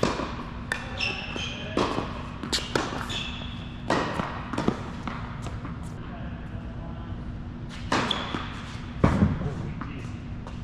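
Tennis ball struck by racquets and bouncing on an indoor hard court during a rally: a series of sharp pops and bounces echoing in a large hall. Several come in quick succession over the first five seconds, then a pause, then two more near the end.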